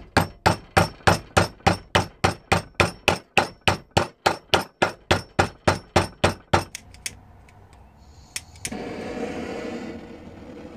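Quick, even hammer blows, about three a second, driving a wooden wedge into the top of a hammer handle to lock the head on; they stop about two-thirds of the way through. Near the end there are a couple of clicks, then a gas torch starts to hiss steadily.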